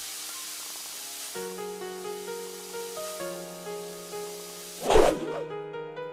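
Intro music with sound effects: a soft hiss of noise opens, then held chord notes that step between pitches, with a sudden loud burst of noise about five seconds in.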